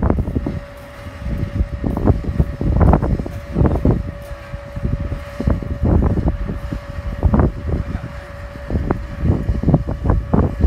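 Wind buffeting the microphone in irregular gusts, the loudest sound throughout. Under it a steady distant drone from the Piper Warrior's four-cylinder piston engine and propeller.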